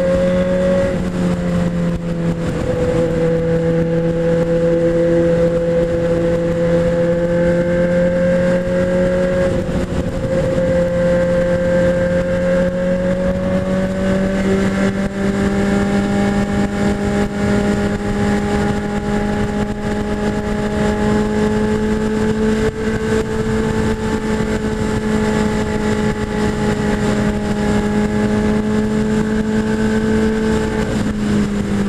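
Honda Hornet 600's inline-four engine pulling at highway speed, its note climbing slowly as the bike gathers speed. Wind rushes over the chin-mounted camera throughout.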